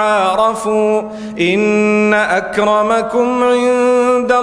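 A man's voice chanting a Quranic verse in Arabic, melodic recitation with long held notes that slide from one pitch to the next, and a short break for breath about a second in.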